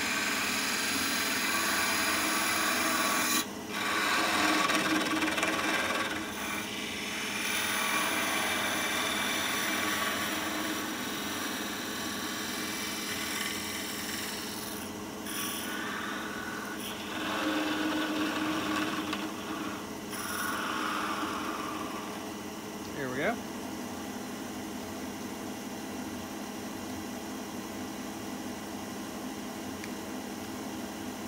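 WoodRiver parting tool cutting into a small piece of spinning maple on a wood lathe, parting it off at a slight upward angle: a rasping cut that comes and goes in spells over the lathe's steady running. Later the cutting stops and only the lathe runs on, with one short rising squeak.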